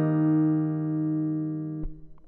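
Final chord of a 1965 Hofner Verithin semi-hollow electric guitar ringing out and slowly fading at the end of the song, then cut off by a sharp click near the end.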